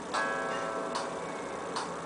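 A vocal-exercise backing track starts: a held chord fades slowly while a metronome click sounds about every 0.8 seconds, three times, counting in before the singing.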